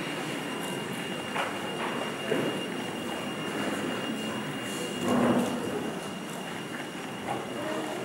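Room noise of a large hall with a steady, thin high-pitched whine. A few soft knocks and rustles come about a second and a half in, around two seconds in, and a slightly louder one about five seconds in.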